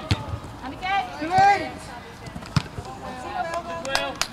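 A football being kicked during play: a few sharp, separate thuds, with a player or spectator's shout in between.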